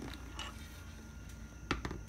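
Faint handling noise from a motorcycle helmet and its mic cable being tucked in under the helmet's bottom edge: light rubbing with a few small clicks, the sharpest near the end.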